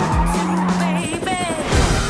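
Car chase: tyres squealing and car engines running over music, with a wavering squeal in the second half.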